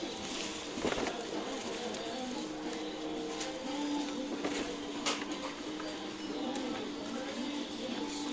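Shop ambience: faint background music with steady held tones and distant voices. A couple of light knocks, about a second in and about five seconds in, as the electric grill on display is handled.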